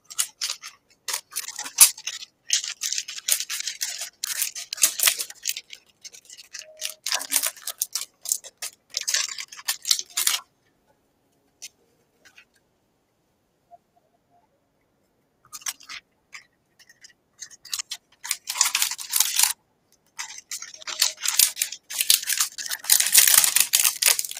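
Trading cards and hard plastic card holders being handled and stacked, giving irregular bursts of crisp plastic clicks, slides and rustles. The bursts stop for a few seconds in the middle, then start again.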